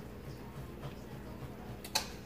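Knife and fork cutting smoked meatloaf on a plate, with a sharp clink of metal on the plate near the end.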